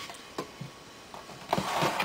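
A few light clicks and knocks of tools being handled on a wooden workbench, then a short rustling hiss near the end.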